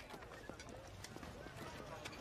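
Faint background voices of people talking at a distance, with a few light taps.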